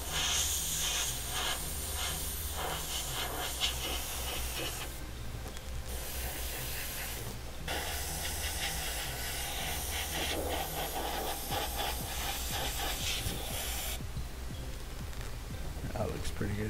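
Airbrush spraying paint with a steady hiss of compressed air, in long passes broken by short pauses about five seconds in and again near eight seconds, stopping about two seconds before the end.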